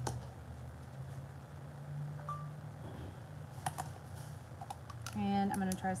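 A few light clicks and taps of plastic cups and paint bottles being handled and set down on a work table, over a steady low hum. A woman starts speaking near the end.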